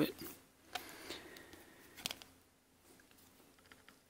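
Faint handling of a small translucent plastic action-figure wing, with two sharp little clicks from its tight joint as it is rocked back and forth to loosen it.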